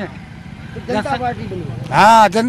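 Low, steady road-traffic rumble in a short gap in the talk, with faint voices about halfway through.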